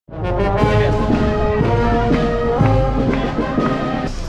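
Brass band playing a tune in the street, horns holding long notes.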